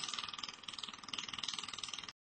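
Laser welding machine firing a rapid, even train of pulses, heard as a fast ticking buzz, briefly softer about half a second in.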